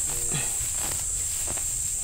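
Steady high-pitched buzzing of summer insects, with a short low hum just after the start.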